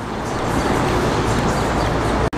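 City street traffic noise: an even rumble of passing vehicles that grows slightly louder.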